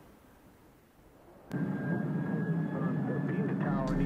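Faint, fading noise of a Beechcraft King Air 350's twin turboprops climbing away, cut off abruptly about a second and a half in by louder music with a voice.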